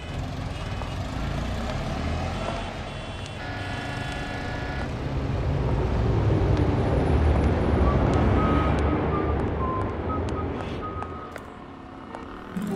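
City street traffic noise: a low rumble of vehicles that swells to its loudest in the middle, with a honk about three and a half seconds in and short high beeps later on.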